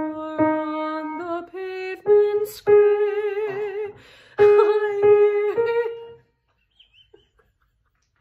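A woman singing a choral part alone, holding each note with vibrato; the singing stops about six seconds in.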